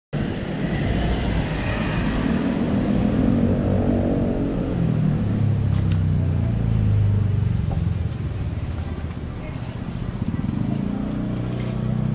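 Street traffic noise, with a motor vehicle running close by during the first few seconds and its pitch bending as it passes, over a steady low hum.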